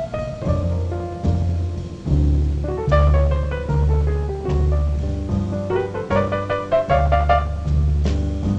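Jazz piano solo on a Steinway grand piano: quick right-hand runs, with a long descending run near the middle and climbing runs later. A string bass walks underneath in even steps.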